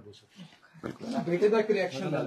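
Raised, overlapping voices of several people in a room, starting loudly about a second in after a brief lull.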